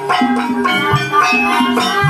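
Live gamelan music of the kind that accompanies a kuda kepang (ebeg) dance: struck, pitched metal or bamboo keyed percussion playing a repeating pattern over a low drum beat about once a second.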